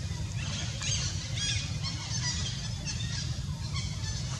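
Many short, high chirps from small birds, over a steady low rumble.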